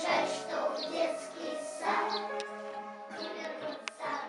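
Music: a song with children's voices singing over an accompaniment.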